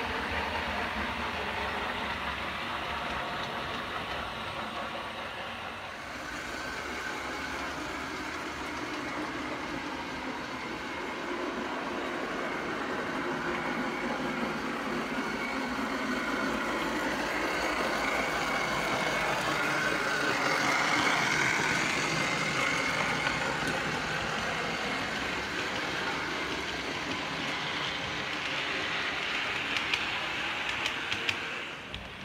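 Steady steam railway sound of a locomotive standing, a continuous hissing and mechanical noise with no clear beat. It changes about six seconds in and swells slightly past the middle.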